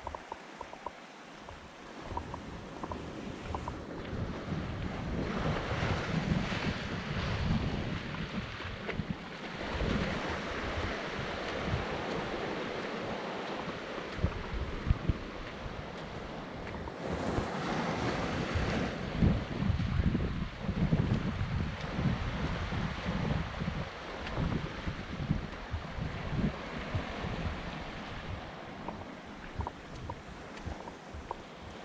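Small waves washing up a sandy beach and over flat rocks, with gusty wind buffeting the microphone. It is quieter for the first couple of seconds, then swells, with a louder wash a little past halfway.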